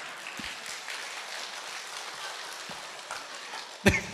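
Audience applauding, an even patter of clapping, with one sharp knock near the end.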